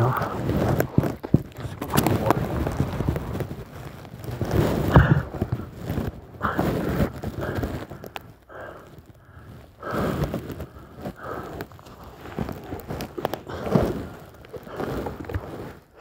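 A man breathing hard and groaning in pain in irregular bursts, hurt with a dislocated shoulder, with footsteps.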